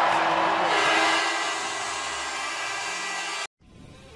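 Hockey arena crowd cheering, with a steady horn sounding over it from about half a second in as the game clock runs out. The sound cuts off suddenly shortly before the end.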